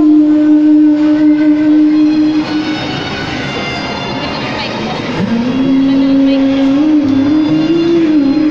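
A live singer holds long sustained notes through a microphone and PA speaker over an instrumental backing track. The first note breaks off about two and a half seconds in. About five seconds in the voice slides up into another held note.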